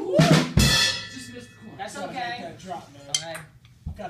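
Drum kit struck twice in quick succession in the first second, the second hit a cymbal crash that rings on for about a second.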